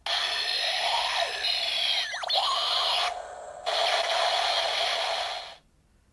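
Kamen Rider Ex-Aid Buggle Driver toy belt playing an electronic sound effect through its small speaker, a hissing burst with a brief warbling pitch sweep about two seconds in. It breaks off briefly about three seconds in, resumes, and cuts off suddenly shortly before the end.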